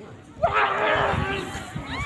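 Crowd of spectators breaking into loud shouting about half a second in, with one long drawn-out voice held over the noise, then dying down.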